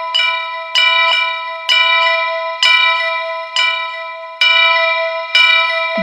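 A single-pitched bell struck about seven times, roughly once a second, each strike ringing on and fading into the next, as the intro of a Ganesh devotional DJ remix.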